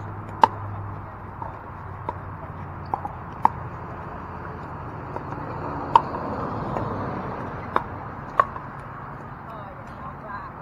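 Pickleball paddles hitting a hard plastic ball during a doubles rally: a string of sharp pops at irregular intervals. The loudest come about half a second in and about six seconds in, over a murmur of voices.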